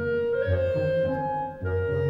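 Orchestral film score: a slow melody of long held notes over low notes that repeat about once a second.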